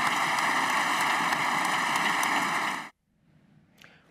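Applause from a large audience, a dense steady clapping that cuts off abruptly about three seconds in, followed by faint room tone.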